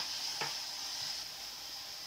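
A steady high hiss with two soft clicks about half a second apart near the start.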